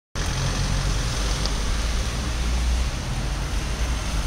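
Steady street noise: a continuous low rumble under an even hiss, like road traffic.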